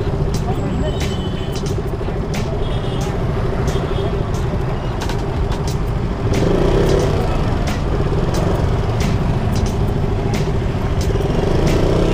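Motorcycle engine running steadily while riding, with wind rumble on the helmet-mounted microphone and a brief swell in level about six seconds in.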